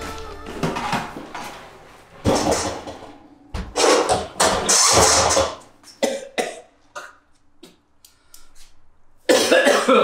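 A man coughing and gagging in several irregular fits, the last one near the end, retching at the stench of rotting food in a fridge that was left without power.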